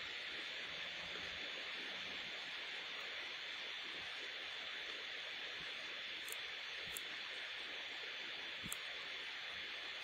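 Steady low hiss of a recording's background noise, with a faint steady high whine in it and a few faint, short clicks spread through it.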